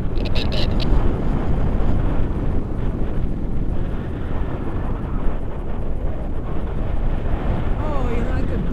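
Wind from the paraglider's airspeed rushing over the camera microphone, a steady low rush of air with a brief crackle in the first second.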